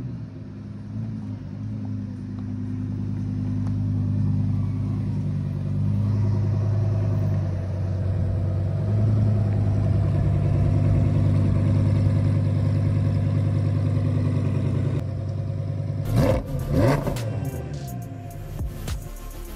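Lamborghini Huracán's V10 engine running at low revs, a steady low drone that slowly grows louder. It is followed by two quick throttle blips about a second before the end.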